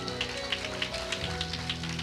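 Scattered hand-clapping from a small congregation over sustained keyboard chords, with the chord changing a little over a second in.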